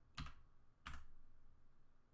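Two keystrokes on a computer keyboard, about two-thirds of a second apart, over faint room tone.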